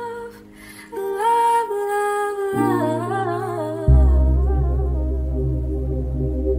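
R&B-style hip-hop beat built on a wavering, hummed or sung vocal sample, with a brief drop in level just after the start. About four seconds in, a deep sustained bass comes in under the vocal.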